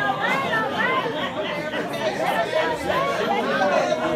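Several people talking over one another at once: congregation members calling out responses to the preacher's question.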